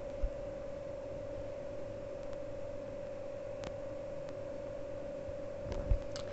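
A steady, faint, even hum-like tone over quiet room noise, with one short soft knock just after the start.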